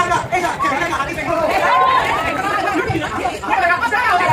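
Several people in a crowd talking at once, their voices overlapping into a steady chatter.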